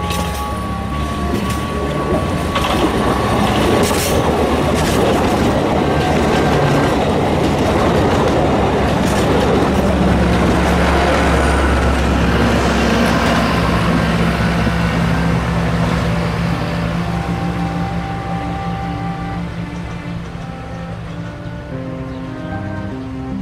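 Alishan Forest Railway narrow-gauge train passing close by. Its wheels on the rails and its diesel locomotive's engine grow louder, are loudest about halfway through, then fade as it moves away.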